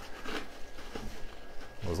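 Faint rustling and handling of silk hydrangea stems and foliage as they are worked into a floral arrangement.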